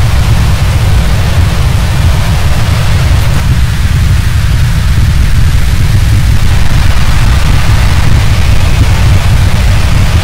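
A loud, steady low rumble with an even hiss over it.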